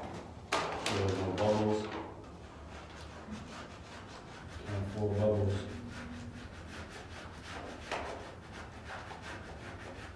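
Vinyl decal rubbed down onto a glass door through its transfer tape, with repeated scraping rubs. There are two louder stretches with a pitched tone, about a second in and again around five seconds.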